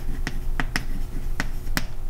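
Chalk clicking against a blackboard as a word is written, about five sharp taps in two seconds.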